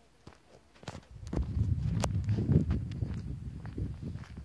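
Footsteps on a dirt track, heard as irregular crunches and clicks, joined about a second in by a low, uneven rumble on the microphone.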